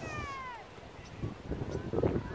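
A single drawn-out, mewing bird call that falls in pitch over about half a second at the start. It is followed by a low rumble of wind on the microphone that grows stronger in the second half.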